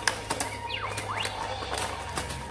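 A LEGO pinball machine in play: a steel ball clicking and knocking against the plastic bricks and flippers, irregular sharp clicks throughout. In the middle a whistling electronic effect glides down in pitch and then back up, over a steady low hum and faint music.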